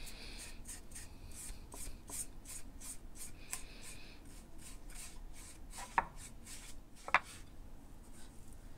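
Foam brush stroking white paint onto a wooden shelf: quick repeated swishing strokes, with two sharp knocks about six and seven seconds in.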